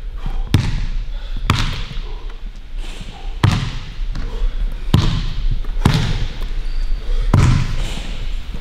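A basketball bouncing on a hardwood gym floor: about six single bounces at uneven intervals, a second or more apart, each with a short echo.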